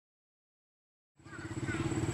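Silence for about a second, then a motorcycle engine running steadily fades in.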